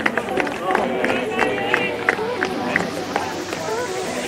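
Footballers' voices shouting and cheering at a goal celebration on the pitch, with short sharp shouts or claps and crowd noise. About three seconds in, a hiss begins rising steadily in pitch.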